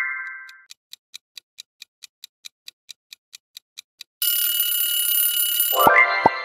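Sound-effect clock ticking at about four to five ticks a second, then a loud alarm-clock bell ringing for under two seconds about four seconds in, which cuts off suddenly. This is a quiz countdown running out. A rising chime fades at the start, and another begins at the very end.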